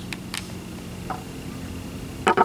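A steady low background hum with a couple of faint clicks in the first half second and a small blip about a second in.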